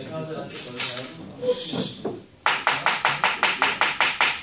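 Talk, then a marker scribbling on a whiteboard: a quick, even run of about a dozen short scratchy strokes, roughly seven a second, starting about halfway through.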